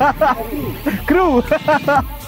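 A person talking, with a steady low wind rumble underneath.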